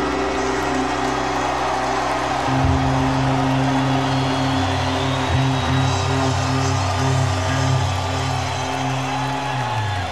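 Live rock band ringing out the final chords of a slow blues, electric guitar and bass held with the low notes shifting, then stopping just before the end, with crowd noise underneath.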